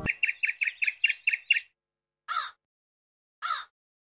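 Birdsong: a quick run of about nine high chirps, then two single calls that fall in pitch, just over a second apart.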